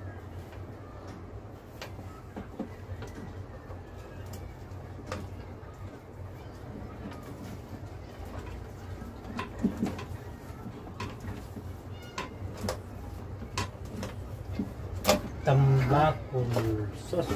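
Small scattered clicks and knocks of hands handling and connecting electrical wiring inside a boat's steering console, over a steady low hum.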